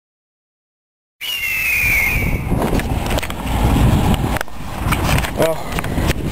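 About a second of silence, then rumbling handling noise and scattered knocks from a handheld camera being moved close against its operator's body and clothing, with a short falling high tone just after the sound begins.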